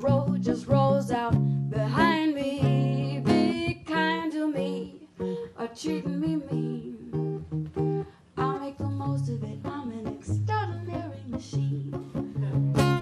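A woman singing live over plucked acoustic guitar, with vibrato on her held notes.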